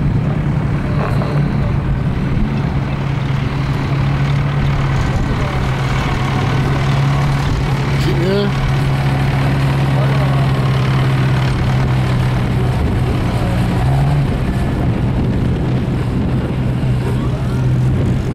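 Autocross special race car's engine running at low, steady revs as the car rolls slowly over the dirt track, with a short rise in pitch about eight seconds in.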